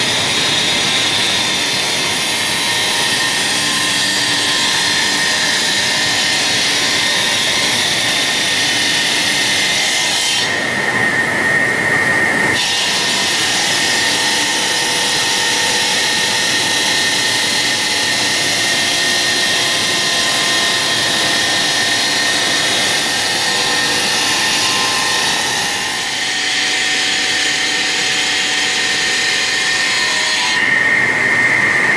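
Stone profiling cutting machines running: diamond circular saw blades cutting stone, a loud steady hiss with a high whine over it. For about two seconds, a third of the way through, the hiss dulls and the whine stands out.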